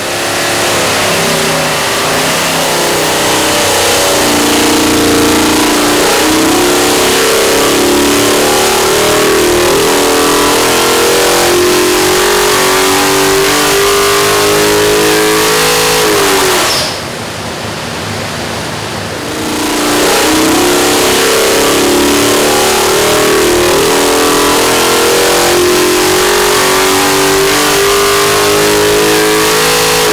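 Bored-and-stroked 427-cubic-inch LS V8 running naturally aspirated on an engine dyno, making wide-open-throttle pulls. The revs climb steadily for about sixteen seconds and drop back. After a few quieter seconds the engine climbs again in a second pull, which falls off at the very end.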